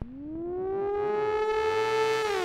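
Roland System-100 software synthesizer playing its "LD Racer Lead" patch: a single lead note that swoops up in pitch at the start, then holds steady.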